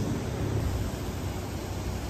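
Steady outdoor background noise: a low rumble under an even hiss, with no distinct event standing out.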